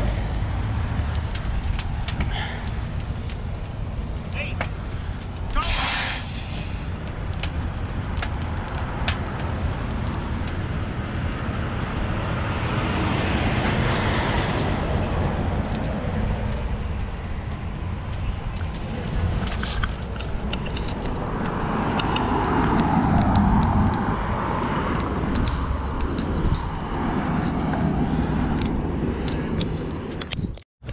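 Highway roadside traffic: a steady low engine rumble, with vehicles passing that swell up about 13 and 23 seconds in, and scattered sharp clicks.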